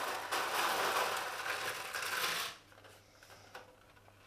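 Smarties rattling and clattering on thin plastic plates as a handful is tipped together and mixed. The rattle stops about two and a half seconds in, leaving a few light clicks.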